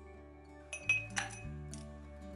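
Large ice cubes being set into a tall drinking glass, clinking sharply against it about four times, over steady background music.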